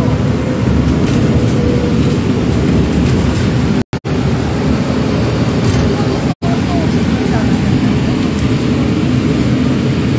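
Steady rumble of a bus's engine and road noise heard from inside the passenger cabin. The sound cuts out completely twice for a moment, around four and six seconds in.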